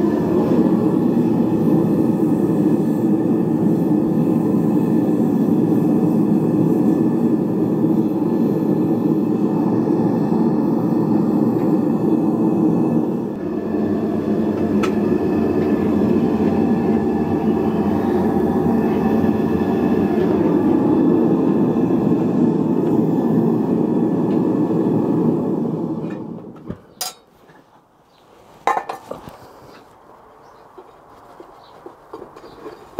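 Propane melting furnace burner running loud and steady while it melts bronze, then shut off sharply about 26 seconds in. Two sharp metallic knocks follow as the furnace is opened and the crucible is taken with tongs.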